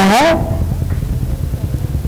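A woman's voice trails off on a final syllable, then a steady low rumble fills the pause.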